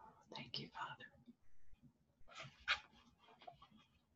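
A soft whispering voice, heard in two short breathy spells: one about half a second in and another just past two seconds.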